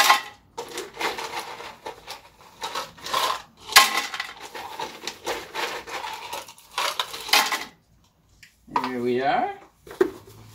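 Ice cubes scooped out of an ice bucket and tipped into a blender jar, in an irregular run of scraping and rattling clatter that stops about two seconds before the end. A short wordless voice sound follows near the end.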